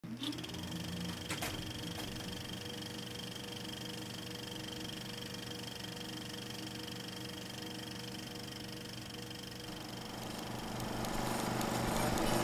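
Film projector running: a steady mechanical whir with a constant high whine, two clicks about a second and a half and two seconds in, and growing louder near the end.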